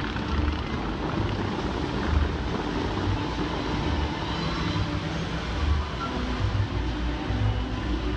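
Bellagio fountain show: tall water jets spraying and falling back onto the lake in a steady rush of water, with the show's music playing faintly underneath.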